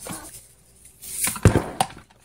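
A short hiss of something sprayed or poured from a can into a plastic bowl, lasting about half a second and stopping sharply, with a knock on the table partway through and another just after.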